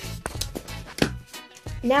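Background music with a steady low beat and a few sharp clicks.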